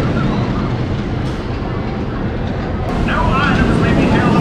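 Bolliger & Mabillard hyper coaster train running along its steel track with a steady low rumble. From about three seconds in, riders' yells rise over it.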